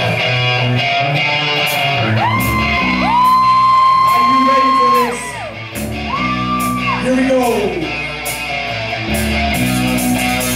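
Live rock band playing: acoustic and electric guitars over drums. Two long high notes are held over the band, the first for about three seconds and the second for about a second, each sliding down as it ends.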